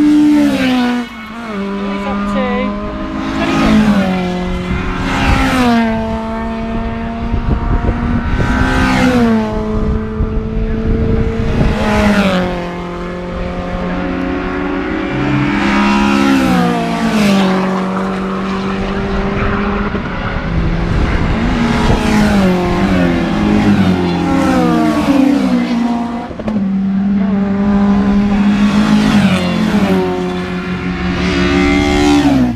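Hatchback racing cars passing at full speed one after another, each engine note falling in pitch as the car goes by, a new car roughly every three or four seconds.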